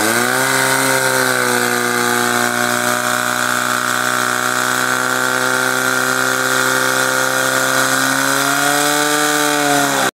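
Portable fire pump's engine running at high revs while it pumps water out to the hose lines and nozzles. The pitch sags briefly at the start as the load comes on, then holds steady and rises a little near the end.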